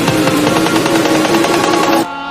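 Electronic dance music in a dubstep style: the deep pulsing bass beat drops out and a dense run of rapid percussion hits carries on over a held synth line.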